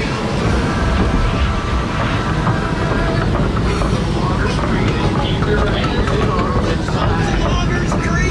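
Log flume boat being carried up the lift hill by the chain conveyor: a steady low rumble and rattle of the chain under the boat, with voices in the background.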